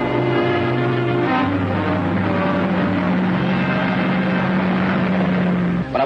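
Dramatic orchestral score. Sustained chords shift about a second in, then settle into one long low held note that cuts off abruptly just before the end, over a steady background hiss.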